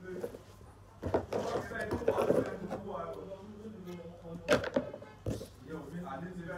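Voices talking in the background, with a few sharp knocks, the loudest about four and a half seconds in.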